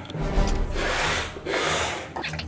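Paper towels torn off a roll and rubbed against the face in two long rustling bursts, over background music.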